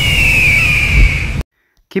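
Logo-sting sound effect: a high whistling tone over a low rumble, drifting slightly down in pitch and cut off abruptly about one and a half seconds in. A man's voice begins at the very end.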